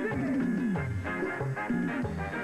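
Instrumental break of a live band's song: saxophones playing over bass and a drum kit, with several falling pitch runs.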